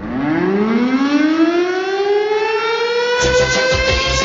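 A siren-like tone winding up, rising steeply in pitch and then levelling off into a held wail. About three seconds in, a drum beat comes in under it as a music jingle starts.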